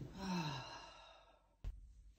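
A man's long, voiced sigh, falling in pitch, as he settles into bed.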